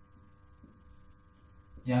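Faint steady electrical hum, a room's mains hum, with a man's voice starting just before the end.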